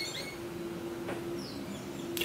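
A few faint, short, high chirps near the start, bird-like, over a steady low hum.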